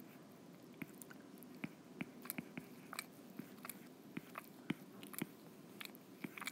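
A cat grooming itself, licking its fur: faint, irregular wet clicks, a few a second.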